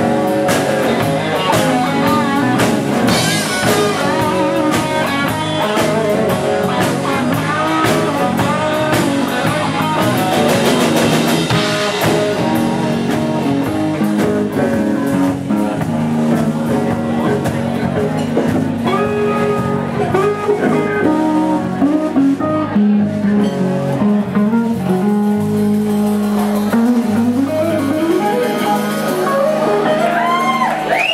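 Live blues-rock band playing: electric guitar lead with bent notes over drum kit and strummed acoustic guitar. The drumming is busier in the first part of the passage.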